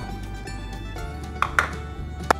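Light background music, with two short taps about a second and a half in, a plastic bowl knocked against the mixing bowl as flour is tipped out of it.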